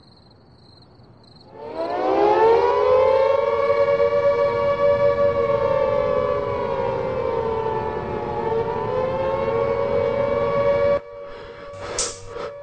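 Air-raid warning siren winding up about a second and a half in, then wailing on a held, slightly wavering chord of several tones with one dip in pitch, and cutting off abruptly near the end.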